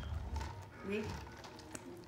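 A voice says one short word about a second in, over quiet room noise with a few faint clicks.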